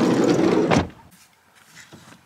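Sliding side door of a Fiat Doblo van running along its track, ending in a knock a little before a second in.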